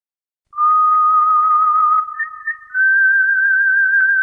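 A high, pure melody line with a slight waver, starting about half a second in. It holds one long note, breaks briefly, then holds a higher note.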